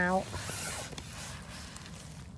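A gloved hand rustling and scraping through wet pine needles and fallen leaves in forest litter, reaching in to pick chanterelle mushrooms. The rustle comes about half a second in and fades after about a second.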